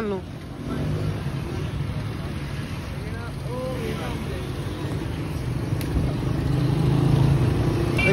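Motorcycle engine running, with street traffic around, growing louder toward the end as the bike gets under way.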